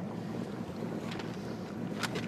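Bass boat's outboard motor idling, a steady low hum, with wind noise on the microphone.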